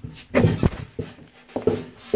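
Handling noise at a manual curtain grommet press: fabric rustling and light knocks of metal grommet parts being set under the die, with a few short, high, voice-like squeaks.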